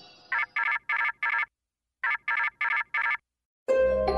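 Electronic beeping in two quick groups of four short beeps, the second group about half a second after the first ends, with the pattern of a ringtone. Music begins near the end.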